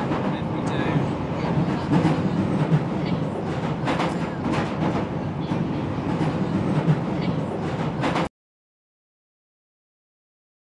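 London Underground train running, heard from inside the carriage: a loud, steady rumble with rattling clicks. It cuts off suddenly to silence about eight seconds in.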